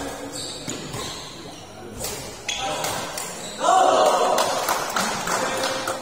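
Badminton rackets striking a shuttlecock in a fast rally, several sharp hits spaced under a second apart. Over the last couple of seconds, voices shout loudly over the play.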